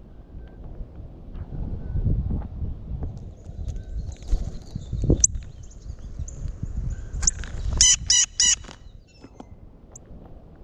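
A bird calls three times in quick succession, loud, near the end, after a couple of short high notes earlier on, over a steady low noise.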